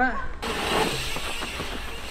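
Dirt jump bike's tyres rolling over a packed-dirt track: a steady hiss that starts suddenly about half a second in.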